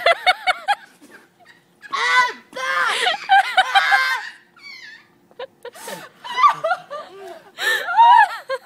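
A group of young people laughing in bursts, with a quick run of short laughs at the start and a longer stretch of laughter about two to four seconds in.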